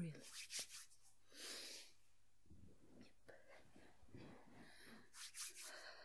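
Faint, soft rubbing of fingertips spreading face cream close to the microphone, in a few brief brushing strokes between near-silent pauses.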